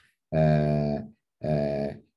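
A man's voice holding two drawn-out, level-pitched hesitation sounds, "uhh… uhh", each under a second long, with a short gap between them.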